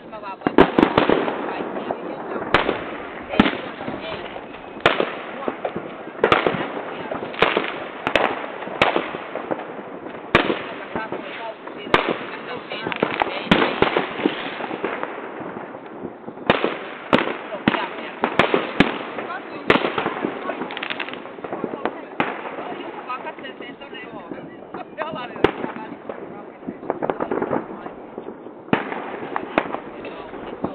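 New Year's fireworks exploding in the sky: an irregular barrage of bangs, at times several a second, over a constant din of more fireworks going off around. The sound is recorded on a smartphone microphone and is muffled, with no top end.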